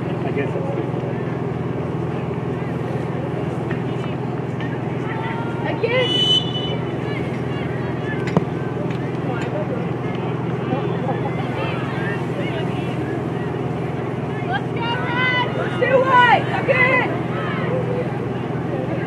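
Players' voices shouting on an open soccer field over a steady low hum of outdoor noise: one short call about six seconds in and a burst of several shouts near the end. A single sharp knock comes a little past the middle.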